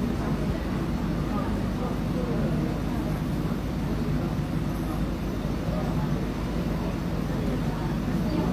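Steady low background hum with faint, indistinct voices underneath.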